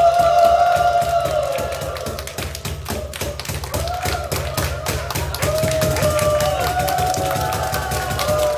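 Live rock cover played on acoustic guitar and bass: a long held high note fades over the first two seconds, then short rising and falling melodic phrases run over steady percussive tapping and a bass line.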